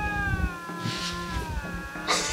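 A lynx yowling at another lynx: one long, wavering, drawn-out call that sags a little in pitch. This is the standoff call lynx make at each other before deciding whether to fight.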